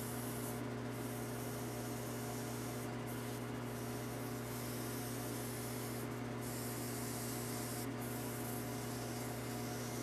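Scotch-Brite pad rubbing on the steel spindle of a Sheldon Vernon horizontal mill as it turns in a running lathe, scrubbing off light surface rust. A steady hiss sits over the lathe's motor hum, with a few brief breaks in the hiss.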